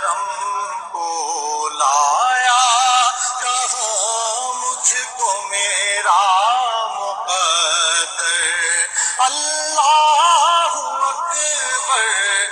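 A man singing an Urdu devotional hamd in long, wavering melismatic notes, with no spoken words in between.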